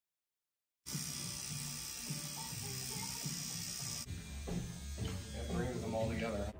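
Tattoo machine buzzing steadily, starting about a second in after silence, with a man's voice talking over a low hum near the end.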